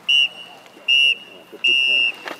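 Referee's whistle blown three times, the last blast the longest: the full-time signal ending the match.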